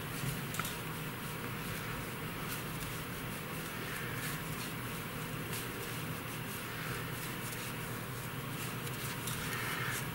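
Knitting needles and yarn as a row of knit stitches is worked: faint, soft clicking and rustling at an even pace.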